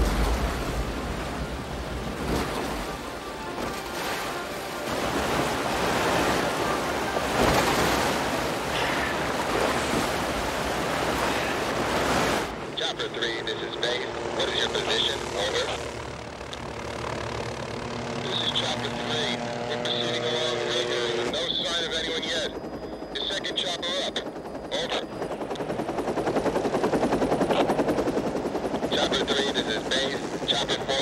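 Rushing whitewater rapids for the first twelve seconds, cut off suddenly. A helicopter flying follows, with music over it.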